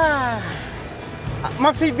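A man's long drawn-out vocal exclamation, falling in pitch and fading out, then men starting to laugh and talk.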